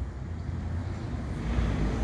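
Road traffic passing, a low rumble that grows louder about one and a half seconds in.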